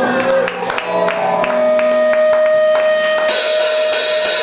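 A live rock band starting a song: a held electric guitar note over scattered drum hits, with cymbals washing in about three seconds in.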